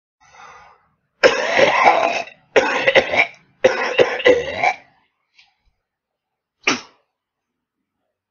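A person coughing in three loud bouts of about a second each, several coughs to a bout, then one short cough near the end.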